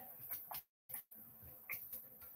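A few faint, scattered clicks of a computer keyboard and mouse in a quiet room.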